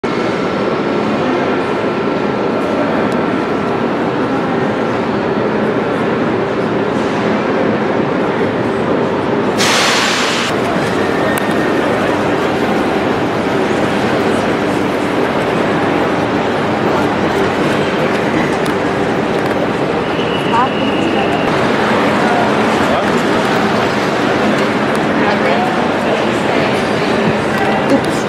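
Busy railway station concourse ambience: a steady wash of crowd chatter and station noise, with a short loud hiss about ten seconds in.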